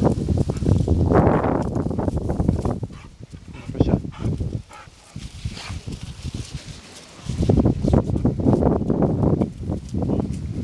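Rustling and crackling of dry grass and brush as a Bernese mountain dog puppy pushes through the undergrowth close by, with heavy rumbling noise on the microphone. It comes in two loud stretches, at the start and again in the last few seconds, and is quieter in between.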